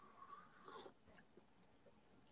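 Near silence, with faint soft mouth sounds of espresso being sipped and tasted in the first second.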